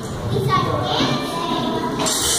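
Children's voices chattering and calling out in a large, echoing hall, with one voice rising in pitch about half a second in.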